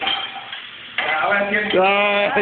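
A man's voice: a drawn-out vocal sound, held for about a second, starting about a second in after a quieter moment.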